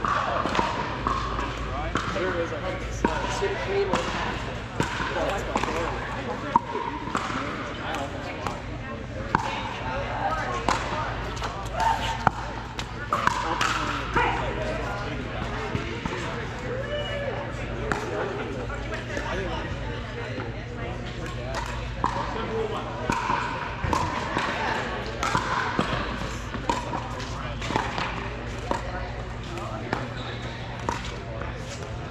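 Pickleball play: irregular sharp pops of paddles hitting the plastic ball, and the ball bouncing on the court, from several courts at once, over steady background chatter.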